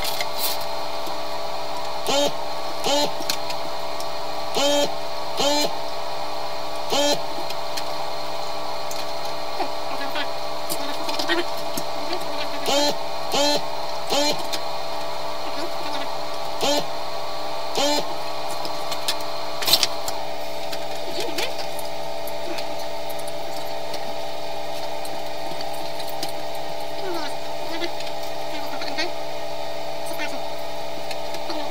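Steady electrical hum made of several fixed tones. Over it, about a dozen short sounds that bend in pitch come every second or two during the first twenty seconds, then stop.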